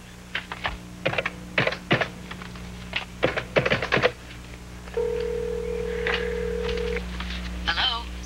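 Corded push-button telephone picked up and dialed, a run of short clicks from the handset and keypad over the first few seconds. About five seconds in, a steady two-second ringback tone sounds from the receiver, the line ringing at the other end.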